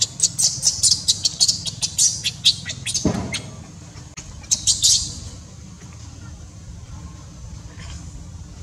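Baby pig-tailed macaque crying in a fast run of short, high-pitched squeals. A lower cry slides downward about three seconds in, and a second short run of squeals comes just before the five-second mark. After that the crying stops.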